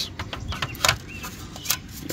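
A few short, sharp clicks and taps of a black plastic hubcap being handled and turned against a steel wheel, lining it up before it is pushed on.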